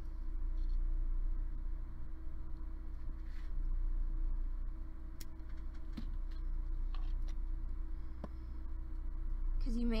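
Steady low hum and room noise with a few faint, short clicks spread through it. A woman's voice starts right at the end.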